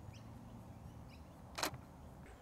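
A single short DSLR shutter click about one and a half seconds in, from the Canon EOS 80D taking a test shot, over faint outdoor background.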